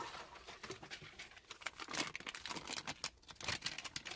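Thin plastic MRE flameless-heater bag and food pouches crinkling and rustling as the heated pouches are pulled out, with a dense run of irregular crackles.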